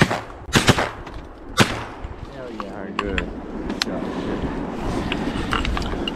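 Shotgun fired at a green-winged teal drake in flight: three quick shots within the first two seconds, followed by a few fainter sharp clicks. Several shells were needed to bring the bird down.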